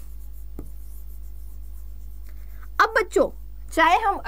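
Pen or stylus writing on a presentation board: a single sharp tap about half a second in, then faint scratching strokes as a word is written, over a steady low hum.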